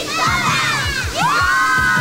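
A group of children shouting and cheering together over the show's theme music, which has a steady drum beat under it. A little over a second in, the voices rise into one long held shout.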